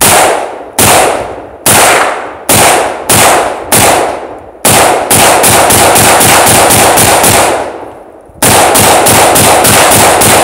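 AK-pattern firearm firing: seven single shots about a second apart, then a fast string of shots about six a second. After a brief pause near the eight-second mark, another fast string follows.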